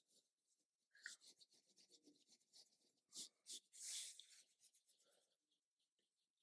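Faint, quick scratchy strokes of a makeup brush sweeping contour powder over the skin, the loudest stroke about four seconds in.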